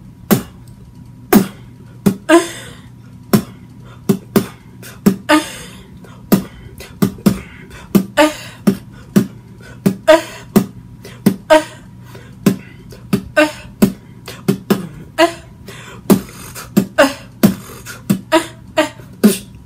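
Solo vocal beatboxing by a man: mouth-made kick, snare and click sounds in a steady groove of about two hits a second, many with a short moaning vocal tone mixed in, in the 'moaning beatbox' style.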